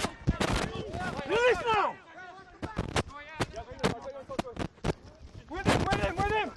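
Rugby players shouting on the field, with a loud drawn-out call about a second in and quieter voices after. Sharp cracks are scattered throughout.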